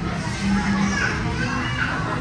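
Ambience of a busy buffet restaurant: diners' indistinct chatter and children's voices over background music.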